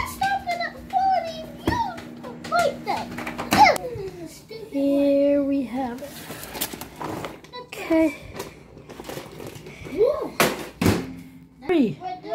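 Microwave oven running with a steady hum while popcorn kernels pop in the bag, sharp irregular pops, until the oven stops about three and a half seconds in. Voices follow.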